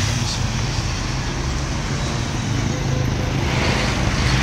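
Road traffic on a city street: a motorcycle and cars driving past over a steady low engine rumble, with a vehicle passing close near the end.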